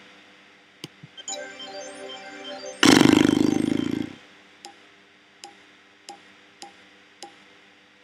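Sound effects of an online slot game (Bejeweled 2 Slots) as a spin plays out: a couple of faint clicks, a held chord, a loud spin sound lasting about a second that fades away, then five short ticks, one for each reel stopping in turn.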